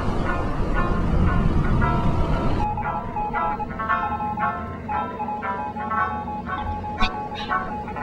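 A warship's low engine-and-sea rumble that cuts off abruptly a few seconds in. A light tune of short, evenly paced notes then plays, with one sharp click near the end.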